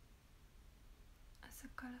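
Near silence, then a woman's brief, soft whispered word in the last half second.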